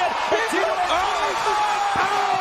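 Excited men's voices exclaiming over one another, with a long drawn-out shout in the second half and a short sharp knock at the very end.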